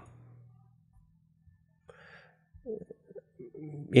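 Near silence in a small room, broken by a short faint breath about halfway through and a few faint low vocal sounds in the last second or so.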